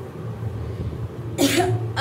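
A woman coughs once, a short sharp cough about one and a half seconds in, after a pause, over a low steady hum.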